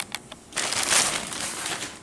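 Plastic packaging crinkling and rustling as it is handled, starting about half a second in and lasting about a second and a half, after a couple of light clicks.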